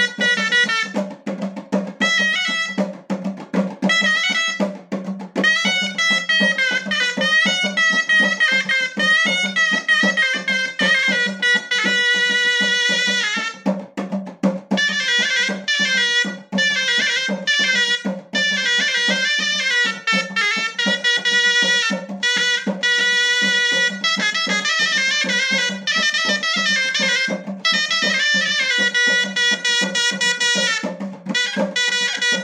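Moroccan ghaita, a wooden double-reed shawm, playing a fast, ornamented chaabi melody in loud, bright, nasal phrases over a steady low drone, with a drum beat underneath and short breaks between phrases.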